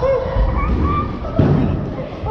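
Wheelchair wheels rumbling as they roll over a concrete skatepark floor, with a single thump about one and a half seconds in.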